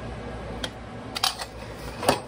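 A few light, sharp clinks of kitchenware, such as a spoon or dish being handled, over a quiet steady kitchen background.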